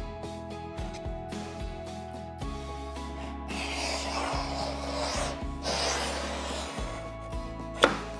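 Hooked laminate scoring tool scraping a groove along a straight-edge rail in black matte Formica laminate, scoring the sheet rather than cutting through it so that it can be snapped along the line. The scraping is strongest from about three to six seconds in, and a sharp tap comes near the end.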